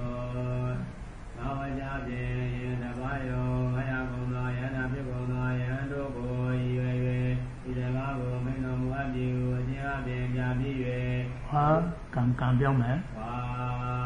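A Buddhist monk's voice chanting Pali text in a monotone, held on one low pitch with short breaks, rising briefly in pitch near the end.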